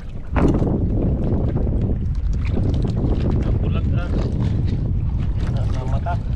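Wind buffeting the microphone in a steady low rumble, with faint voices in the background.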